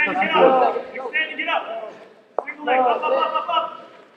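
Speech only: a man's voice shouting, with a single sharp click a little past halfway.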